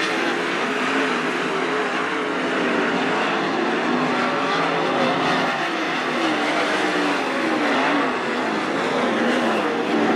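A field of 410 sprint cars racing on a dirt oval: several open-headered, methanol-burning 410-cubic-inch V8 engines running hard at once. Their overlapping notes rise and fall as the drivers get on and off the throttle.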